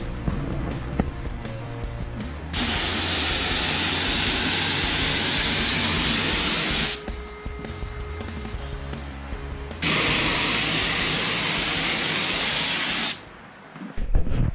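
Compressed-air spray gun with a siphon-feed cup spraying epoxy primer: two long hissing bursts of about four seconds each, starting and stopping sharply, over background music.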